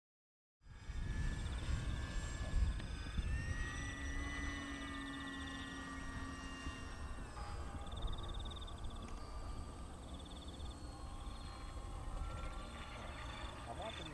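Distant RC model warplane's motor heard as a thin sustained whine, rising in pitch about three seconds in and falling again about four seconds later. Under it runs a low rumble of wind on the microphone, and rapid pulsed chirping goes on in the background.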